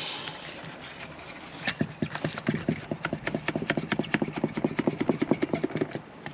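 Wire-out windshield removal: a cutting cord being drawn through the urethane bead by a winding tool, a rasping sawing sound. From about two seconds in it comes as a rapid, even run of clicks, several a second.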